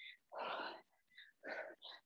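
A woman breathing hard while exercising: a longer breath out, then two short puffs near the end.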